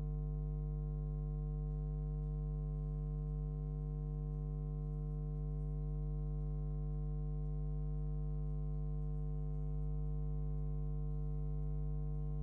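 Steady electrical hum, a low buzz with a stack of overtones that never changes.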